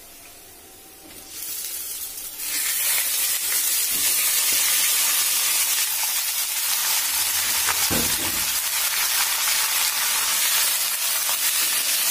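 Raw chicken pieces hitting hot oil and fried onions in a karahi, setting off a loud sizzle that swells in about two seconds in and then holds steady. There is a single knock a little past the middle.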